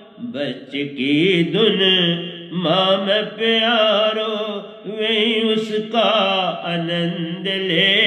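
An elderly man singing a Hindi devotional bhajan into a microphone, drawing out long held notes with a wavering pitch.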